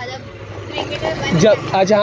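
A small scooter engine idling low and steady under quiet, indistinct talk, which grows louder near the end.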